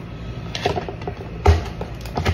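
A single dull knock about one and a half seconds in, over a low steady room hum.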